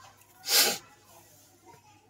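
A person sneezing once, a short sharp burst about half a second in.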